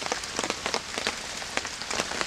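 Rain falling: an even hiss with many separate drop ticks scattered through it.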